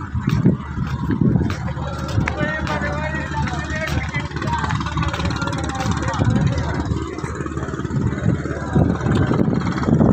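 A boat's engine running steadily at low revs, a continuous low drone, with voices talking over it.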